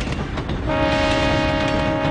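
A passenger train running past with a rumble and clatter of wheels, then its horn sounding one long steady chord from under a second in.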